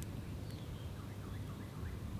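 A bird calling faintly: a rapid run of short, repeated chirping notes that starts about a second in.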